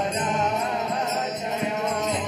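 Devotional mantra chanting sung over a steady ringing of small hand cymbals (kartals).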